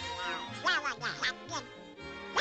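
Donald Duck's quacking cartoon voice: a quick run of about five garbled syllables that bend up and down in pitch, over orchestral background music.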